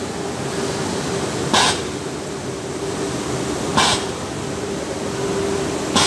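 Short hisses of compressed air from a pneumatic balloon-dummy machine, three of them about two seconds apart, over a steady machine hum.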